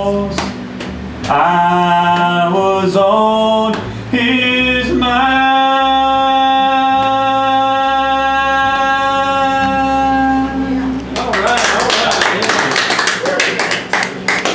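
A man singing the close of a song, stepping through a few notes and then holding one long final note for about six seconds over guitar and bass accompaniment. The song ends about eleven seconds in, and a small audience breaks into applause.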